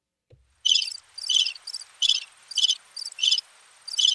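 Cricket-chirping sound effect, the comic 'crickets' gag for an awkward silence after a remark falls flat. High chirps repeat evenly about twice a second, starting just under a second in.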